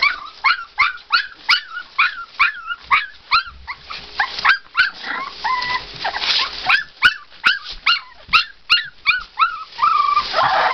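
Litter of three-week-old American bulldog puppies crying: a quick, steady run of short yelps that fall in pitch, about two to three a second, with one longer held whine about halfway through.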